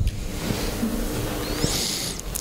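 A sound effect played with the presentation: a steady rushing hiss with a held low tone through the middle, and a whoosh rising in pitch near the end.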